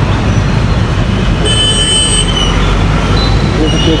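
Busy street traffic, mostly motorbikes and cars, as a steady dense rumble, with a brief high tone about one and a half seconds in.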